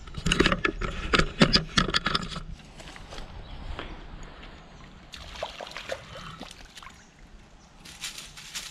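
A hooked redfin perch being reeled in and landed: a flurry of quick, irregular splashes and clicks over the first couple of seconds, then softer scuffing and rustling, with a looser second flurry about five seconds in.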